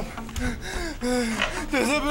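A man's wordless voice, moaning and gasping in short bending cries.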